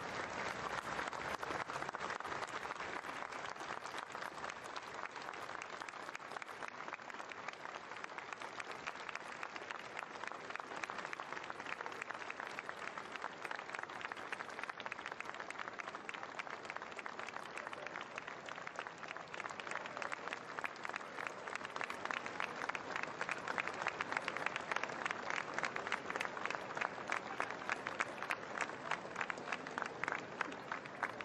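Large outdoor crowd applauding politely and steadily, a ripple of clapping rather than cheering, growing louder and crisper about two-thirds of the way through.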